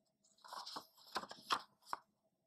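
A paper page of a picture book being turned by hand: a rustle of paper with three sharp crackles, the last near the end.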